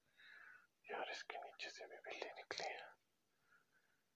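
A man whispering, a short breathy phrase of about two seconds that is unvoiced and soft.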